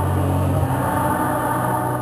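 Choir singing a sacred hymn over sustained low held notes, with a change of note about half a second in.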